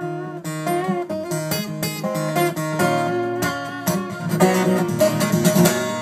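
Acoustic guitar played solo, a run of strummed and picked chords between sung lines with no voice over it.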